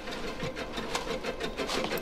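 Rapid, irregular clicking and scratching, about seven clicks a second, over a steady faint hum: a tense trailer sound effect.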